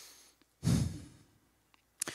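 A man's breath close to a handheld microphone: the tail of a soft intake, then about half a second in a sharp sigh out that puffs on the mic and fades within about half a second.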